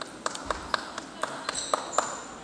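Table tennis balls clicking off bats and tables in a sports hall, about four sharp clicks a second, each with a short ring after it, plus a brief high squeak near the end.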